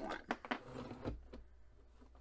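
A few sharp clicks and clacks from the Cinch binding tool's metal handle and punch mechanism as the handle is lifted back up after punching, all within about the first second.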